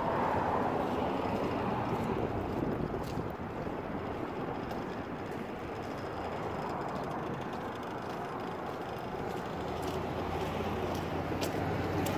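Passing street traffic: a car goes by just after the start. The noise eases off in the middle, then a vehicle's low engine rumble builds as another approaches near the end.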